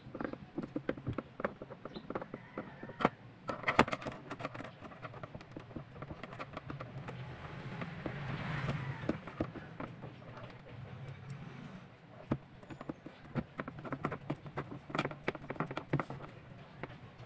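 Scattered clicks and taps of a screwdriver and hands working on a plastic speaker cabinet. A low rumble swells and fades around the middle.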